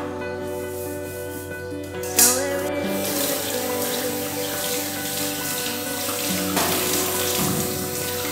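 Tap water running into a stainless-steel trough sink as a small pot is rinsed under it. The water comes on with a splash about two seconds in and then runs steadily, over soft background music.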